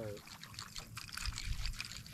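Light splashing and dripping water, a quick run of small sharp ticks and splashes.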